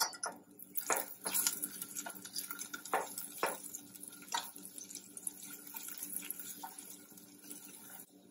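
Sliced garlic sizzling and crackling in hot oil in a stainless steel saucepan while a silicone spatula stirs it, with a few louder sharp knocks and scrapes of the spatula on the pot in the first half.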